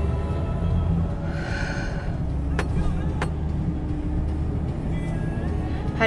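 Low engine and road drone inside a moving Ford Windstar minivan's cabin, with music playing over it. A short high-pitched sound comes about a second and a half in, and two sharp clicks a little before the middle.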